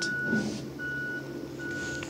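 An electronic beeper sounding a single steady high tone over and over, each beep a little under half a second long, repeating a bit more than once a second.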